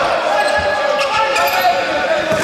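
Futsal being played on a wooden indoor court: shoes squeaking on the floor, a few sharp knocks of the ball being kicked, and players calling out, all echoing in the large hall.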